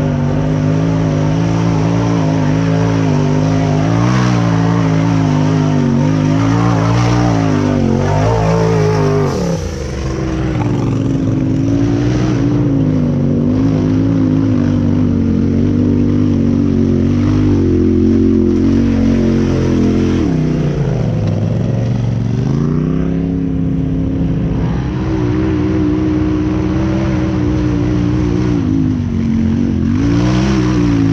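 Side-by-side UTV engine running and being revved, its note rising and falling, dropping off briefly about ten seconds in and again about twenty seconds in before climbing again.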